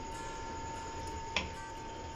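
Low background with a steady faint high-pitched hum and a single sharp click about one and a half seconds in.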